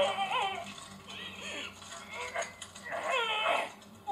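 Soundtrack of a subtitled anime episode playing through speakers: Japanese character voices giving short, strained cries. The strongest is a high, wavering cry about three seconds in.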